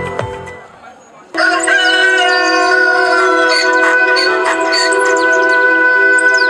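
Advertising music with a beat, played over loudspeakers, fades out in the first second. After a short lull, a new soundtrack starts abruptly at full level about a second in: a sustained chord with many short, high, falling chirps over it, like birdsong.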